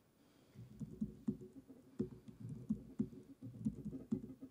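Typing on a laptop keyboard: an irregular run of key taps that starts about half a second in.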